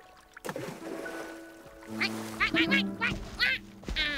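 Cartoon duck quacking, a quick run of short quacks in the second half, over steady background music. A sharp thump lands right at the end.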